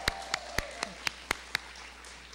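One person's hand claps close to a microphone: about seven sharp claps at roughly four a second, stopping about a second and a half in.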